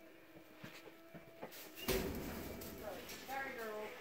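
A sudden bump about halfway through, the loudest sound, as the phone is jostled against the goat or the straw. Near the end comes a brief wavering voice under a second long.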